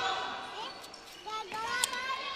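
Players' voices calling out on a handball court, with a few sharp knocks of the ball bouncing on the sports-hall floor in the second half.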